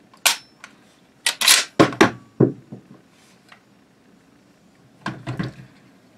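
Sharp metallic clicks and clacks of a Mossberg Maverick 88 12-gauge pump-action shotgun being handled: a single click just after the start, a run of clacks about one to two and a half seconds in, and another short run near the end.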